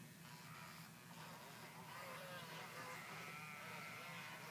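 Pleo robotic toy dinosaur making faint, wavering electronic creature calls from about a second in as it is fed its toy leaf, over a steady low hum.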